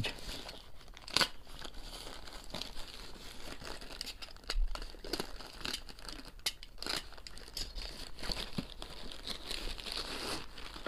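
Black plastic mailer bag crinkling and rustling as it is handled and torn open by hand, with irregular crackles and a few sharper ones.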